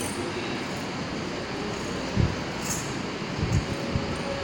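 Steady rushing background noise with no speech, broken by a low thump about two seconds in and two more near the end.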